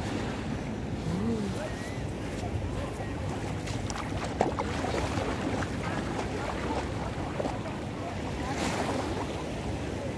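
Seaside ambience: waves washing on the shore with wind buffeting the microphone, steady throughout, with a brief knock about four seconds in and a swell of surf hiss near the end.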